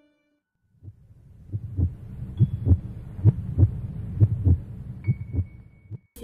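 Heartbeat sound effect: paired low thumps, a lub-dub a little under once a second, over a low steady hum. It begins about a second in, after a brief silence.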